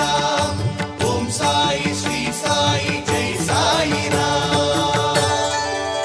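A Sai bhajan, devotional Indian music, playing with a steady percussion beat under a melodic line, between sung verses.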